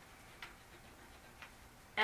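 Quiet room tone with two faint ticks about a second apart.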